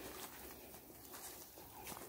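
Faint outdoor ambience of people walking on a leaf-strewn dirt path, with a few soft footfalls and rustles.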